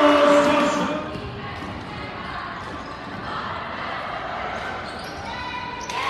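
Girls' basketball game in a school gym: the ball bouncing on the hardwood court amid voices shouting, loudest in the first second, then quieter crowd noise.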